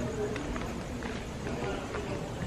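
Footsteps walking on a paved alley, with faint voices in the background.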